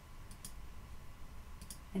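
Faint computer mouse clicks as checkboxes are toggled: a couple of quick clicks about a third of a second in and two more near the end.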